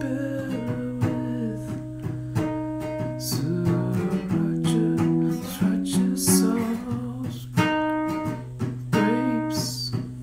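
Background music: an acoustic guitar strummed steadily, with a voice singing in places.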